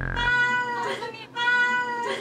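Two cat meows, each a little under a second long and held at a steady pitch.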